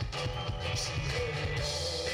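Live rock band playing: guitars and a drum kit, with a lead vocalist singing.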